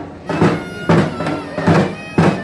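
Festival band playing: dhak drums beating in a steady rhythm, about two and a half strokes a second, with a high held melody line over them.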